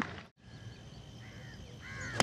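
A bird cawing twice, crow-like, about a second in and near the end, over a faint steady outdoor background.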